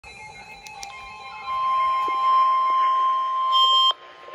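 Handheld weather radio sounding the steady alert tone of the NOAA Weather Radio warning alarm, quieter tones first, then one loud held pitch from about a second and a half in that cuts off abruptly just before the end. The tone signals that a severe thunderstorm warning message is about to follow.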